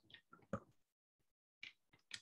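Near silence broken by a few faint, brief clicks, with stretches of dead digital silence between them.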